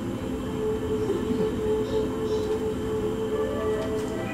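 A steady low mechanical rumble with a held hum running through it.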